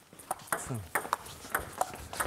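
Table tennis ball in a fast rally, ticking off the rackets and the table: several sharp, quick clicks in irregular succession.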